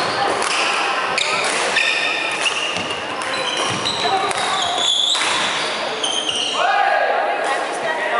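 Badminton rally on a wooden hall court: sharp racket hits on the shuttlecock and many short, high squeaks of court shoes on the floor, one sliding down in pitch near the end, ringing in the large hall.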